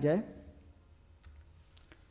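A few faint clicks from the pointer device used to write on screen, over a low steady hum, after the last word of speech trails off at the start.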